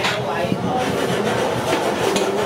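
A steady mechanical rattle, with voices in the background.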